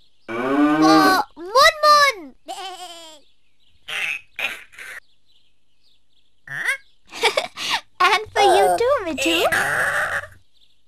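Bleating livestock: a few short calls with wavering, arching pitch in the first three seconds, scattered calls after that, and a denser run of calls over a low hum near the end.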